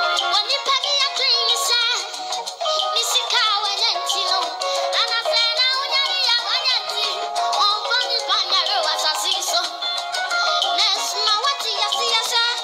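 A boy singing into a microphone over instrumental accompaniment, his voice sliding and bending between many notes.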